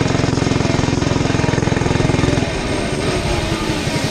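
Mini bike's small engine running at high revs under way, a rapid steady pulsing note that eases off and drops about two and a half seconds in.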